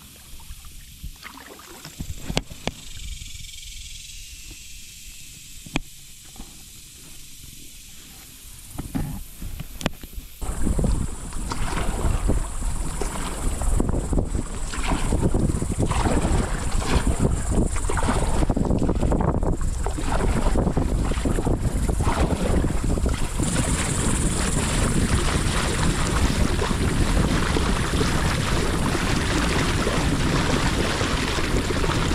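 Kayak paddle strokes with dripping and splashing water, then from about ten seconds in a sudden, loud, steady rush of choppy water against the kayak.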